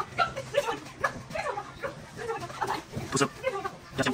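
Short, wordless vocal sounds from people bouncing on trampolines, broken into many brief, uneven bits.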